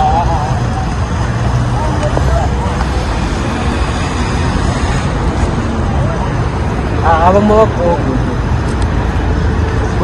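Steady low outdoor rumble of road traffic. A player's voice calls out briefly about seven seconds in.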